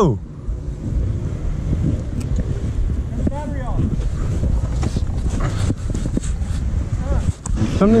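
Kawasaki KLX-230R's air-cooled single-cylinder engine running at low revs, a steady low rumble, with wind noise on the microphone; the rider finds something wrong with its throttle.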